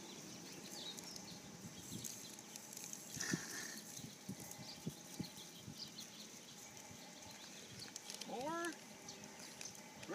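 Small crunches of footsteps on gravel and the rustle of a plastic birdseed bag, with a louder rustle about three seconds in. A short rising, voice-like call comes about eight and a half seconds in.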